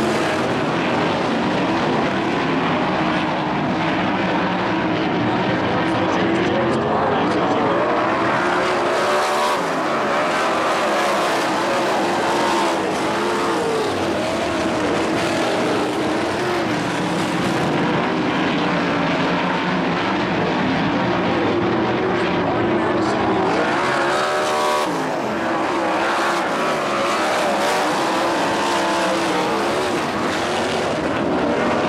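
A pack of winged sprint cars racing, several V8 engines running at once, their pitches rising and falling as the cars lift and get back on the throttle through the turns. The sound is loud and continuous.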